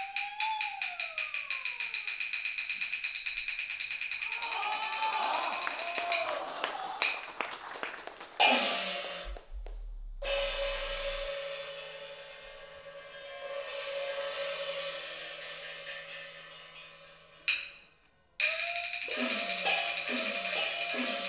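Chinese opera percussion: a run of sharp drum and clapper strokes that gets faster, then two loud cymbal or gong crashes that ring on for several seconds each. A sliding melodic line comes in under the strokes and again near the end.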